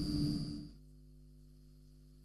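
Faint studio room tone that dies away within the first second, then near silence with only a very faint steady hum.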